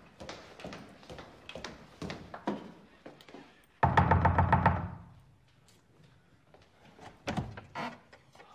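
Boot heels stepping on a stone-tiled floor, then a loud, rapid run of knocks on a wooden door with a gloved fist about four seconds in, lasting about a second. A few more knocks come near the end.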